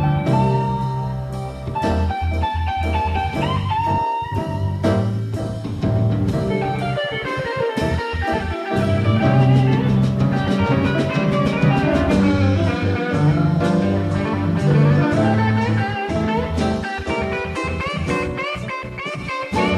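Blues band playing an instrumental passage: a lead line with bent notes over a steady bass line and drums.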